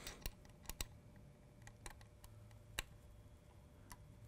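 Faint, irregular small metal clicks of an Allen wrench turning a set screw in a polar-alignment camera's mount adapter, the screw being tightened down until snug.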